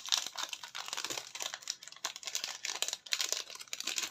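Clear cellophane packaging crinkling and rustling as a stack of chipboard frames and their card backing are slid back into the plastic sleeve, with irregular crackles throughout.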